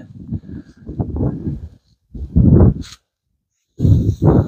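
Gusts of wind buffeting the microphone in irregular low rumbling bursts, with a sudden dead-silent gap near the end.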